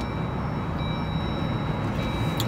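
Steady low rumble of a car's engine and road noise heard inside the cabin while driving, with faint thin high-pitched tones that come and go.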